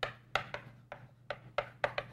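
Chalk on a chalkboard during handwriting: quick, uneven taps and short scrapes as each letter is stroked, about four sharp strokes a second.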